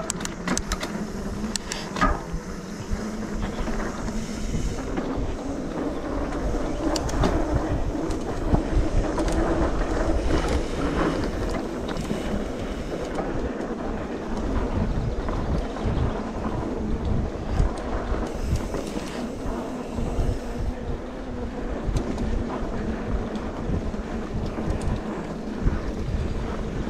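Trek Remedy 8 full-suspension mountain bike riding down a dirt singletrack: knobby tyres rumbling over the ground, with frequent clicks and rattles from the chain and frame over bumps, and wind buffeting the microphone.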